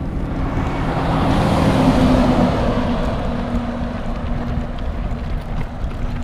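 A vehicle passing on the road alongside: its tyre and engine noise swells to a peak about two seconds in, then fades. Under it is a steady low rumble of stroller wheels rolling over the dirt shoulder, with wind on the microphone.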